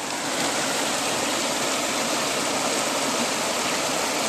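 Creek water running steadily over rocks, an even rushing sound with no breaks.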